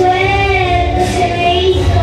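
A young girl singing into a microphone over accompanying music, holding long, slightly wavering notes.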